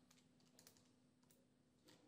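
Very faint clicks of Casio scientific calculator keys being pressed, a few separate presses.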